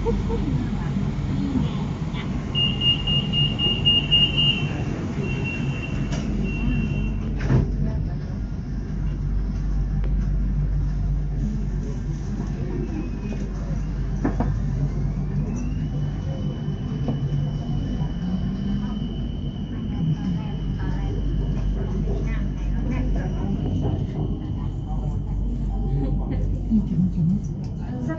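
Inside a BTS Skytrain carriage: a steady low rumble from the train, with a run of short high beeps a few seconds in. About halfway through, a high motor whine rises in pitch and then holds steady as the train runs.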